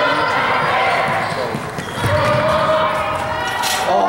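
Several people's voices talking in a gym hall, with a dull thud about two seconds in.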